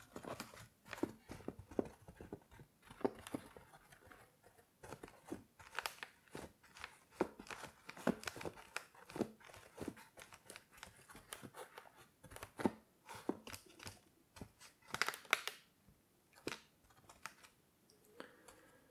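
Fingers scratching and rubbing the green felt lining of a wooden chess box and touching the wooden chess pieces in their slots. It makes a run of irregular soft scratches and light clicks, picked up close to the microphone.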